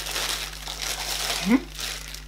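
Clear plastic wrapping crinkling steadily as a small device is pulled out of it by hand.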